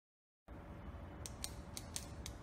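Intro title sound effect under an animated logo reveal. A low rumble starts about half a second in, and in the last second it is joined by four sharp, high clicks at roughly even spacing.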